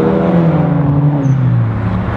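Hyundai Genesis Coupe driving past close by, its engine note sliding steadily down in pitch as it goes by.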